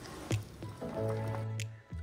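Water starting to bubble and boil around an electric immersion heater in a stainless steel tumbler, under background music.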